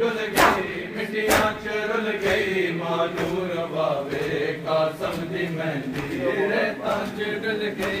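Men chanting a Punjabi noha together, with loud chest-beating slaps of matam about once a second that stop after about a second and a half.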